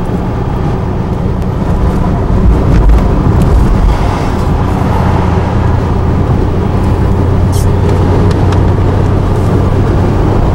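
Car driving at highway speed, heard from inside the cabin: a steady low drone of engine and tyre noise, a little louder about two to four seconds in.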